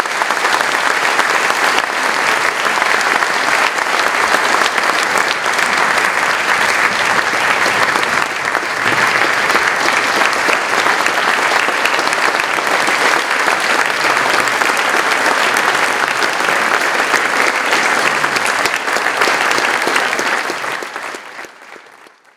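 A large audience applauding steadily, dense clapping that fades out near the end.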